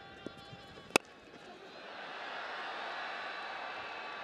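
A cricket bat strikes the ball once with a sharp crack about a second in. Thin, steady high whining tones sound early on, and stadium crowd noise swells from about a second and a half and holds.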